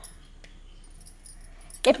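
Mostly quiet room tone with a single faint click about half a second in, then a woman starts speaking near the end.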